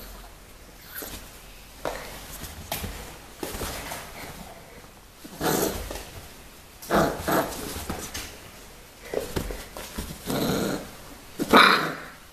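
Four-week-old bull terrier puppy growling in short bursts, about half a second each, several of them in the second half.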